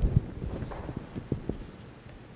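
Marker writing on a whiteboard: a run of short, irregular taps and strokes as a fraction is written.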